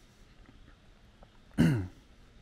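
One short, loud cough or throat-clearing from a person close to the microphone, about one and a half seconds in, starting sharply and dropping in pitch.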